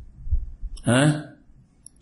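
A pause in a man's lecture: one short spoken word about a second in, with a few faint low thuds and a low hum before it.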